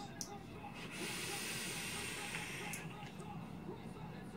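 A vape being drawn on: a steady hiss of air and sizzling coil through the atomizer for about two seconds, ending with a brief click, then a softer exhale of vapour.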